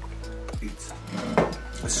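Background music with steady held notes, under a short mouth sound a little before the end.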